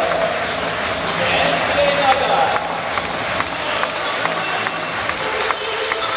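Music over a football stadium's public-address system, mixed with the voices of the crowd in the stands and scattered claps.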